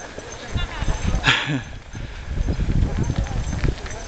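A dog barking briefly about a second in, over a steady low rumble.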